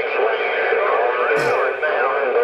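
A voice received over a Stryker SR955HPC CB radio, heard through an external speaker. It sounds thin and band-limited over a steady hiss, with a short burst of noise about one and a half seconds in.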